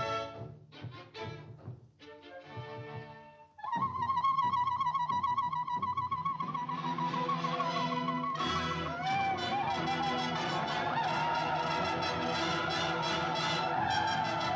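Orchestral cartoon score: a few soft, short phrases, then about three and a half seconds in a loud held note with vibrato comes in over the orchestra, and the full ensemble thickens from about eight and a half seconds.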